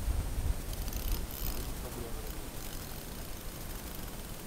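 Wind buffeting an outdoor camera microphone, a low rumble that is strongest in the first half second and then eases.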